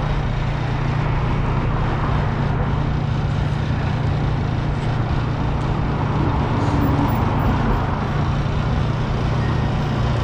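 Road traffic passing on a busy city boulevard: a steady wash of engine and tyre noise over a constant low hum.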